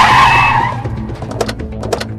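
Car tyres skidding to a stop, a loud screech that fades out within the first second. Music follows, with a run of sharp ticking strokes.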